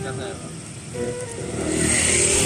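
Roadside traffic noise, a steady rush of passing vehicles that grows louder near the end, with a few short spoken words over it.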